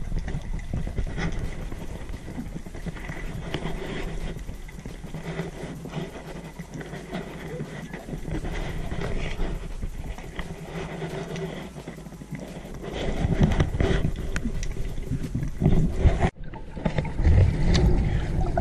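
Muffled underwater sound picked up through a GoPro's waterproof housing: a steady low hum with faint crackling clicks, growing louder and rumbling in the last few seconds, with a brief dropout near the end.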